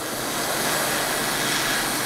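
A welding arc hissing steadily, growing a little louder in the first half-second and then holding level.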